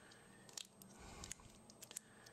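Near silence, with a few faint soft ticks and rustles of gloved hands handling a lump of epoxy putty.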